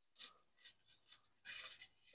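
Faint rustling and scraping of fabric drapes and a telescoping curtain rod being handled and extended: a few soft scuffs, then a longer rub near the end.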